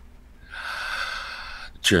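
A man's long audible breath, lasting about a second, breathy and voiceless.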